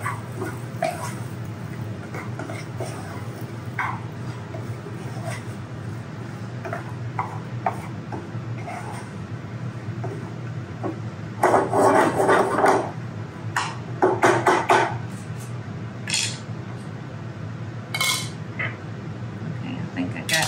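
Wooden spoon stirring chopped pecans toasting in butter in a small saucepan, with scattered light knocks and scrapes against the pan. Two louder stretches of clatter come about twelve and fifteen seconds in.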